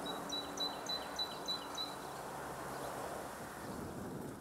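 Outdoor breeze with a steady rustle, and a small bird giving a quick run of about seven high chirps, roughly four a second, that stops about halfway through.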